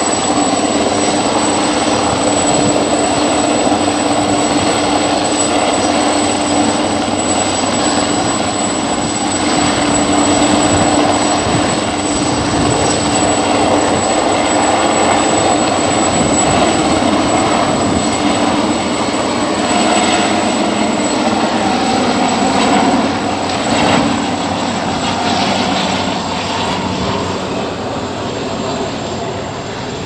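Helicopter hovering low, its rotor and turbine engine running with a loud steady noise, a low hum and a high whine, fading a little near the end.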